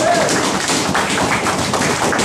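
A small group applauding: a dense, steady patter of many quick hand claps.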